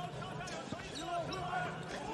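A basketball dribbled on a hardwood court in a large arena, with one clear bounce about a third of the way in. Faint voices can be heard in the background.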